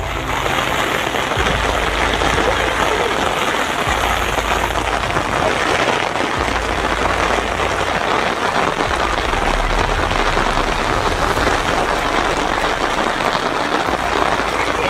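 Steady heavy rain falling on the open field and on the umbrella held over the microphone.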